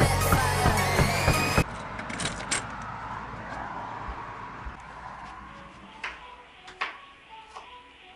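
Electronic background music with a steady beat that cuts off abruptly about one and a half seconds in, leaving quiet room sound with a few scattered knocks and clicks.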